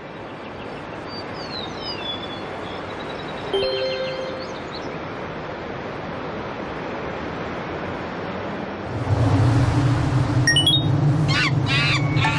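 Edited TV soundtrack: a steady, slowly swelling noisy whoosh with a few short chirping sound effects. About nine seconds in, a louder sustained low musical drone comes in, with quick high bird-like chirps above it.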